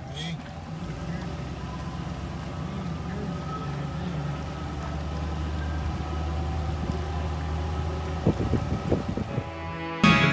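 An engine running steadily with a low hum, its pitch wavering slightly, with a few short knocks near the end.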